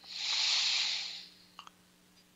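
A person's breath close to the microphone, about a second long, swelling and then fading, followed by a faint click.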